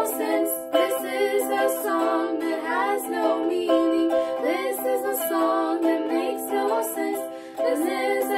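A young woman singing a song with instrumental accompaniment, her voice dropping away briefly near the end.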